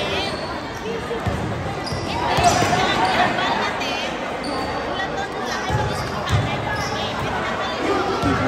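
A basketball being dribbled on an indoor gym floor during a game: a few low bounces, with players and spectators calling out and chattering, loudest a couple of seconds in.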